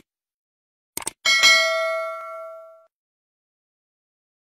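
Subscribe-button animation sound effect: two quick mouse clicks about a second in, then a bell-like notification ding that rings out and fades over about a second and a half.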